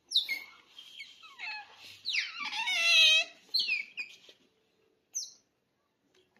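Otter calling: a string of high squeaks that each fall in pitch, the loudest a long wavering whine about two to three seconds in, with short chirps before and after.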